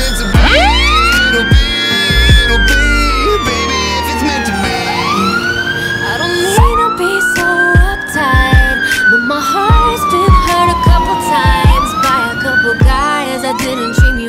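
Fire engine siren wailing in long sweeps, each rising quickly and then falling slowly over a few seconds, twice, with quicker sweeps near the end. A low rumble runs through the first few seconds, and background music plays underneath.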